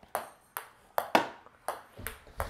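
Ping pong ball bouncing on a wooden floor and hit back and forth by paddles in a quick rally: about six sharp clicks at uneven spacing.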